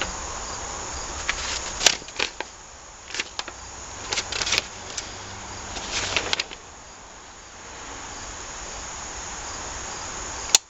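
Crinkling and rustling from handling small plastic seal-kit bags and unfolding a paper instruction sheet on a workbench. It comes as a string of short crackles, mostly between about two and six and a half seconds in, over a steady hiss.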